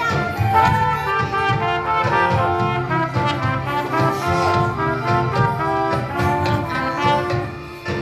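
A school ensemble of recorders and trumpets playing a tune together in steady, held notes. The music dips briefly just before the end.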